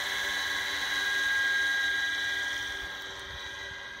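Radio-controlled scale MD 500E helicopter's motor and rotors giving a steady high-pitched whine. It grows slightly louder, then fades over the last couple of seconds as the helicopter flies off carrying its water-filled Bambi bucket.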